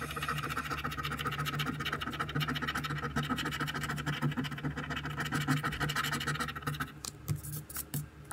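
A coin scraping the silver coating off a scratch-off lottery ticket in quick, continuous rasping strokes. The scraping stops about seven seconds in, followed by a few light taps.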